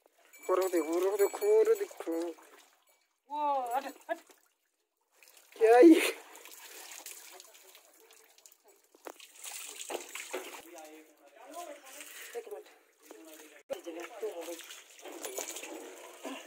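A stiff plastic brush scrubs a cow's wet hide, with water splashing and trickling, as it is washed by hand. A few short voice sounds come in the first six seconds, the loudest about six seconds in.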